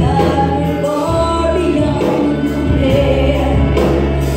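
A young female singer singing a Christian song live into a microphone, over band accompaniment with a steady bass line.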